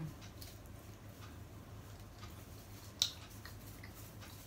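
Faint clicks and crackles of shrimp being peeled and seafood handled by hand on a plastic-covered table, with one sharper click about three seconds in, over a steady low hum.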